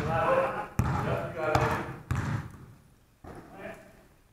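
Basketball bouncing on a hardwood gym floor, about four bounces roughly a second apart, each echoing in the large hall, with players' shouts over the first half.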